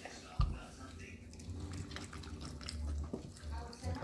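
Two dogs licking and chewing at a frosted cake, making wet smacking and lapping noises with many small clicks. There is a single sharp thump about half a second in.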